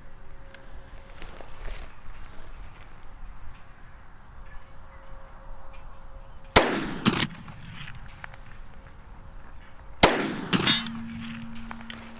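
Two 10mm pistol shots from a Springfield XD(M), about three and a half seconds apart. About two-thirds of a second after the second shot comes the fainter clang of the bullet striking a distant steel target, which rings on for a second or so.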